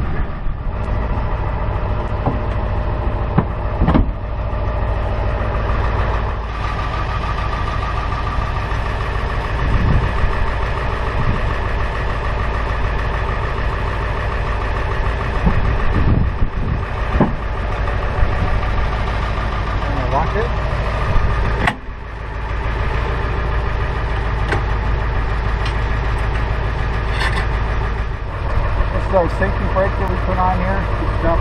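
Pickup truck engine idling steadily, with a few separate knocks along the way.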